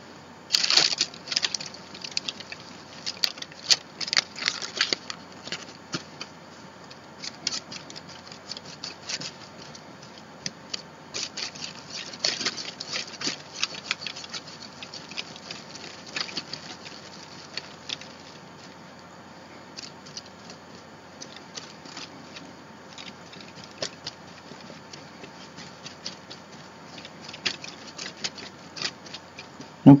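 Paintbrush stroking and dabbing matte medium over tissue paper on a journal page: irregular soft scratches, taps and paper crinkles, busiest in the first half and thinning out later.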